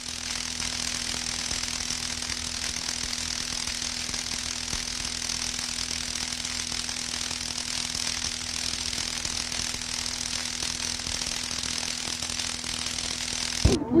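A steady mechanical whir: even hiss with a low steady hum underneath, unchanging throughout and stopping abruptly just before the end.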